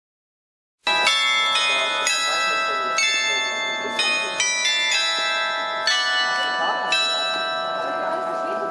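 Wall-mounted glockenspiel of fourteen bells playing a melody, starting abruptly about a second in, with a new note struck about every half second and each note ringing on under the next.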